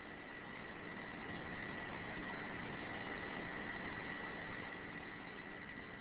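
Faint steady hiss of recording background noise with a thin, steady whine running through it and no speech.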